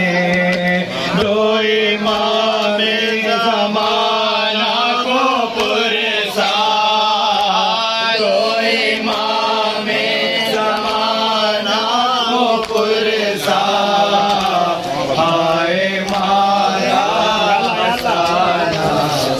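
A man chants an Urdu noha, a mourning lament, into a microphone through a loudspeaker, in a continuous melodic line over a steady held low note.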